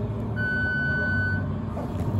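A single steady electronic beep, about a second long, from a roller coaster's station, over a low steady hum: the ride's signal that the train is about to be dispatched.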